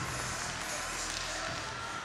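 Steady ice-arena background of crowd noise with faint music under it.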